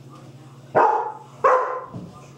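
A dog barking twice, two sharp barks about 0.7 s apart, during play between a puppy and a larger dog.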